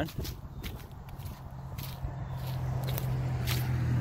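Footsteps walking through dry grass and fallen leaves, with irregular short crunches. Under them a steady low hum grows louder through the second half.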